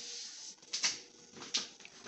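Soft handling sounds on a kitchen counter: a brief rustle, then two light clicks about a second apart, over a faint steady hum.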